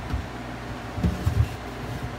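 A stainless steel hotel pan being slid into a black food warmer cabinet, giving a few dull bumps near the start and again about a second in, over a steady low hum.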